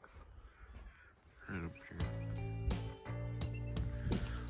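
A crow cawing once, about a second and a half in, then background music with a steady beat starting about two seconds in.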